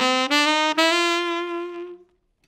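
Tenor saxophone finishing an ascending bebop scale in quick eighth notes, with only the offbeats tongued, then holding the top note for about a second before cutting off.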